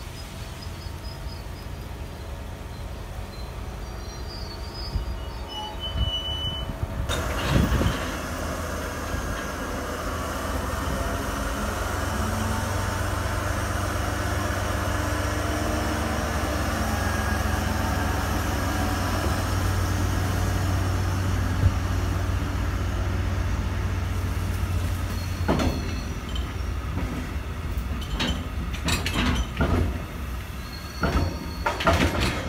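MaK G 1206 diesel-hydraulic shunting locomotive passing at low speed, its diesel engine's steady drone growing louder as it comes by. Tank wagons then roll past, with a series of sharp wheel knocks over the rail joints near the end.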